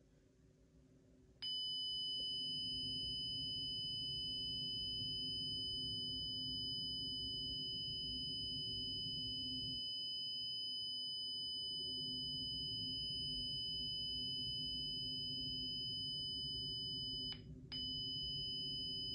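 Honeywell Lyric alarm panel's siren sounding a steady, high-pitched alarm tone for an alarm on the front door zone. It starts about a second and a half in and breaks off for a moment near the end before resuming.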